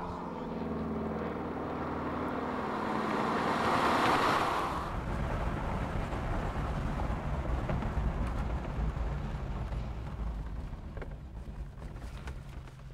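Ford Capri 280 Brooklands' 2.8-litre V6 engine and tyres as the car drives round a banked test track: the engine note falls in pitch over the first few seconds and the sound swells as the car passes about four seconds in. A steady low rumble of engine and road noise follows and eases toward the end.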